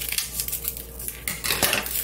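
Dried red chili peppers being cut with scissors and shaken out over a stainless steel tray: a string of small clicks and crackles from the brittle pepper and the blades, with dry seeds ticking onto the metal.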